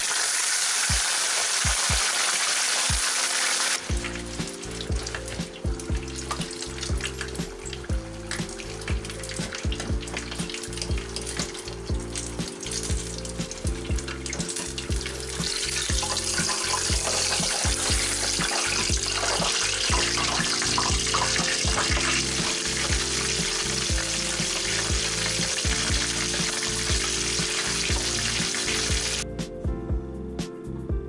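Battered chicken pieces deep-frying in hot oil in a saucepan for their second fry: a steady sizzle. Background music with a bass line grows louder about four seconds in, and the sizzle cuts off shortly before the end.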